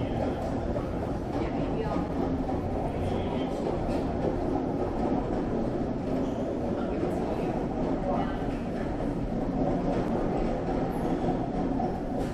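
Airport concourse ambience: a steady low rumble of the large hall with distant murmured voices of passing travellers, and rolling suitcase wheels on the hard floor.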